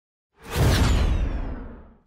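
Whoosh sound effect for an on-screen transition: it starts suddenly about half a second in with a strong low end and a faint falling sweep on top, then fades away over about a second and a half.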